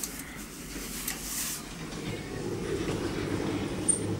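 Otis traction lift car travelling down: a steady running rumble that grows louder in the second half, with a short hiss about a second in.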